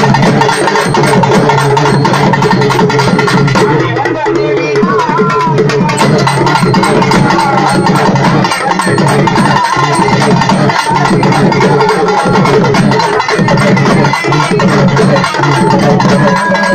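Urumi melam drum ensemble playing loud, continuous interlocking drumming on stick-beaten barrel drums and frame drums. A wavering pitched tone rises above the drums about four seconds in.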